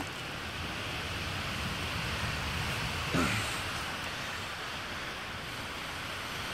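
Steady background hiss, with one brief, slightly louder sound about three seconds in.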